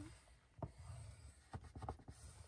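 Faint scratching of a plastic scoring tool drawn along a scoring-board groove, scoring patterned paper, with a soft tick about half a second in and a few light ticks near the end.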